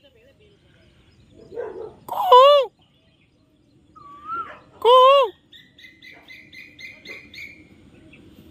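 Birds calling in the trees: two loud, arched calls about three seconds apart, then a quick run of short, high chirps near the end.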